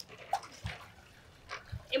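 Water poured from a glass into a pot inside the smoker, splashing in a few short, irregular gushes.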